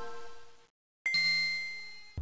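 Bell-like chime sound effects for an intro title: the ringing tail of one chime dies out about half a second in, and after a short silence a second chime strikes about a second in and rings down.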